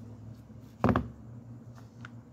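A single sharp knock just under a second in as a steel bearing race is set down on a rubber mat, with faint light clicks of metal parts being handled around it.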